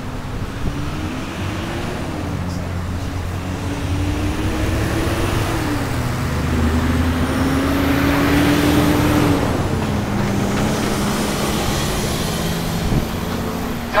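Road traffic: a motor vehicle's engine humming and rumbling as it passes along the street, growing louder to a peak about eight or nine seconds in and then easing off.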